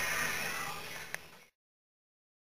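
Faint background noise inside a vehicle's cabin, fading away, with one light click a little past a second in; it then cuts off abruptly to dead silence.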